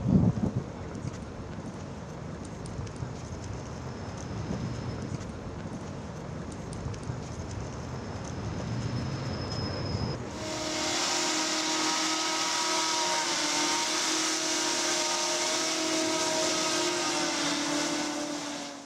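XTURISMO hoverbike's propellers running as it hovers: a loud, steady rush of air with a droning multi-tone hum that starts abruptly about ten seconds in. Before that, only a low uneven rumble, with a thump at the very start.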